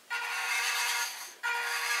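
Brushed electric motor and gearing of a WPL B-1 1:16 RC military truck whining as the truck drives, a steady high whine that fades out after about a second and starts again near the end.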